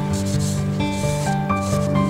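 Paper towel wet with acetone rubbing over a small metal part in two wiping strokes, about a quarter and three-quarters of the way through, over background music with a melody and bass line.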